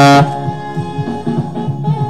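A loud held saxophone note cuts off about a quarter second in. After it, quieter smooth-jazz backing music with a steady low pulse carries on.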